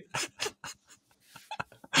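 Soft, breathy laughter: a few short puffs of breath and a brief giggle about one and a half seconds in.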